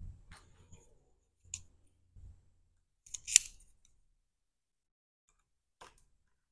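Steel scriber scratching and tapping on a thin copper strip held over a vise-grip jaw: a few short, separate scrapes and clicks, the sharpest about three seconds in.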